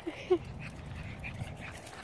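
Pug puppy giving two short, quick yips just after the start, the second louder, followed by a low rustling.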